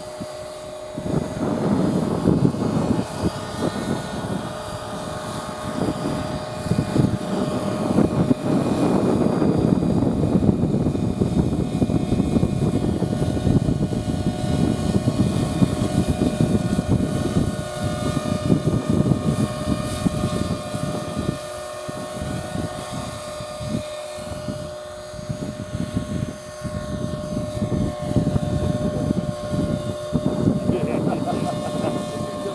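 A 450-size electric radio-controlled model helicopter, a scale AS350 Squirrel, in flight, its motor and rotor giving a steady high whine. Under it, an uneven low rumble of wind on the microphone starts about a second in and is the loudest sound.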